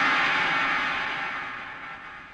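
A soundtrack effect: a hissing rush of noise, the tail of a dramatic crash or swell, that dies away steadily over the two seconds.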